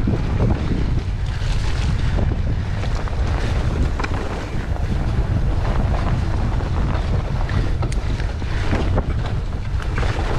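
Wind buffeting the microphone of a camera on a mountain bike riding fast down a dirt woodland trail, a steady heavy rumble, with the hiss of tyres over dirt and leaves and frequent short knocks and rattles from the bike over bumps.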